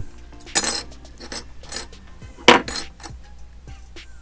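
Metal clinks and taps from a radio's steel battery-terminal bracket and its soldered coil spring being handled with needle-nose pliers: a few short, sharp clicks, the loudest about two and a half seconds in.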